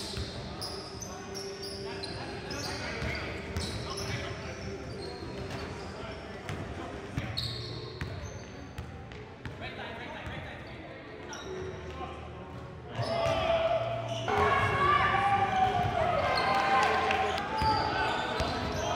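Pickup basketball in a gym hall: a ball dribbled on the hardwood court and short shoe squeaks, with players' voices echoing around the hall. The voices get louder about 13 seconds in.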